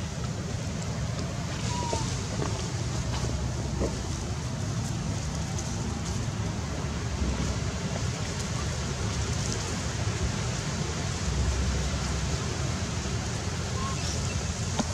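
Steady outdoor background noise, a low rumble with an even hiss, with a few faint, short high squeaks about two seconds in and at the very end.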